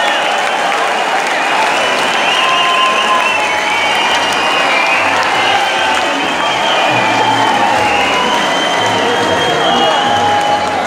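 Large concert audience applauding steadily, with cheering voices over the clapping.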